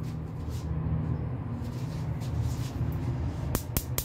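A steady low hum runs throughout. Near the end a rapid run of sharp clicks begins, about five a second: a gas stove burner's spark igniter clicking as the burner is lit.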